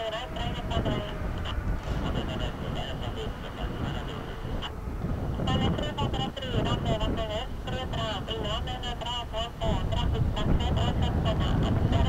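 Low rumble of a Boeing 787 airliner's engines rolling on the runway, growing louder near the end. Indistinct talk from people close to the microphone runs over it.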